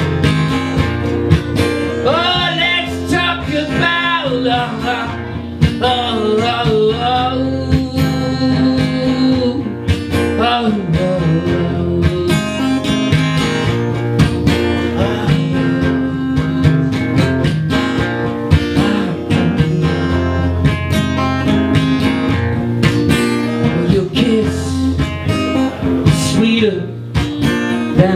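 Steel-string acoustic guitar strummed in a steady rhythm during a live solo song, with a man's singing voice coming in over it in places.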